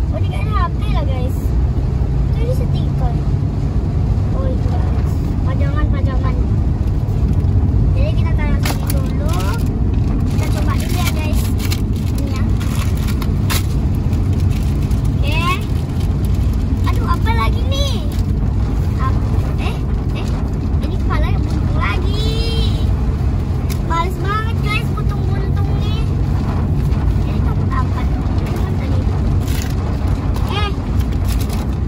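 Steady low rumble of a car's engine and road noise, heard from inside the cabin, with intermittent crinkling and rustling of plastic toy wrappers being torn open and handled.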